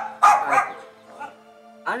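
A man's voice in short, loud bursts over background music with steady held notes.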